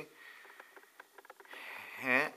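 A few faint ticks, then a person breathing in through the nose with a soft hiss near the end, just before speaking again.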